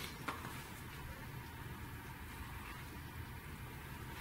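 Quiet room tone with a low steady hum, and one short soft click shortly after the start.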